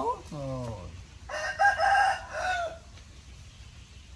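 A rooster crowing once: a single call of over a second that starts about a second in.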